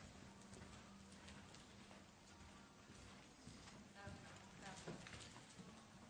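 Faint hoofbeats of a horse cantering on the dirt footing of an indoor arena.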